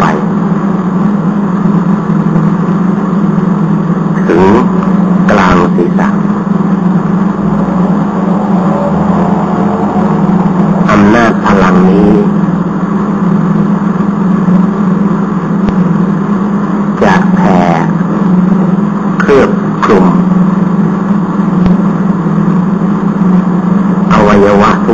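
A loud, steady low hum runs throughout, broken now and then by a few short bursts of a voice.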